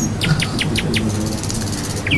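Insects chirping: a run of short chirps in the first second, then a fast, even, high trill.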